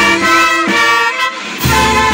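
Brass band of trumpets, saxophones and bass drum playing a slow processional march (marcha regular), with held brass chords and a bass drum stroke near the end.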